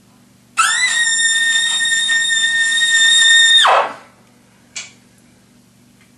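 Trumpet played through a Vincent Bach 11 French horn mouthpiece, sounding a loud double high C. The note scoops up into pitch about half a second in, is held steady for about three seconds, then stops.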